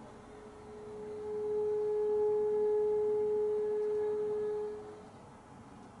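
Bassoon holding one soft, nearly pure high note that swells in over the first second or so, holds steady for about three seconds and fades away about five seconds in.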